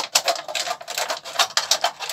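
Scissors cutting through a thin plastic drinks bottle: a rapid, irregular run of sharp snips and crackles from the plastic.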